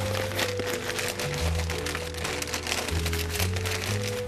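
Newspaper crinkling and rustling as it is folded and rolled up around a pile of artichoke trimmings, over steady background music.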